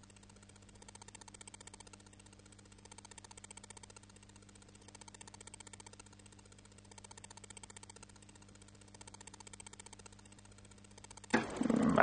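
Quiet room tone with a steady low electrical hum, swelling faintly about every two seconds; a man starts speaking just before the end.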